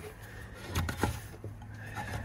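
Faint knocks and rubbing of a rubber drive belt being worked around an engine's cooling fan blades by hand, with a couple of short knocks about a second in, over a steady low hum.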